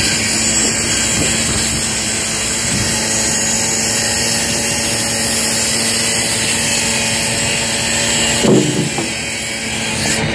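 Steady drone of construction-site machinery running, with a constant low hum under a wide hiss. About eight and a half seconds in, a brief louder knock stands out.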